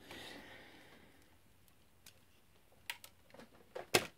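Mostly quiet, with a faint hiss that fades over the first second, then a few small clicks in the second half and a sharper click at the very end.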